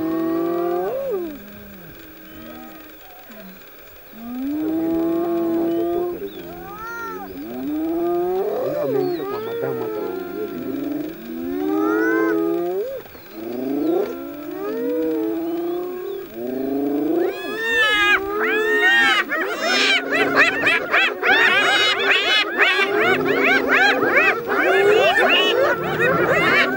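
A clan of spotted hyenas calling while mobbing lions at a kill: separate rising and falling calls at first, then from about two-thirds of the way in many hyenas at once, a dense, louder chorus of higher calls.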